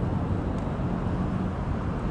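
Steady city street background noise: a low, even traffic rumble with a faint hum and no distinct events.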